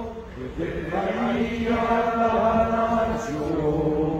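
A group of men reciting a rosary prayer together in unison, in a chant-like drone of long held tones.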